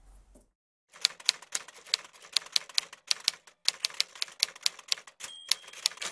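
Typewriter keys clacking about four strokes a second, in two runs with a short pause about three seconds in, then a short bell ring near the end.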